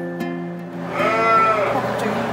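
A sheep bleats once, loud and sudden, about a second in, a single drawn call over light acoustic guitar background music.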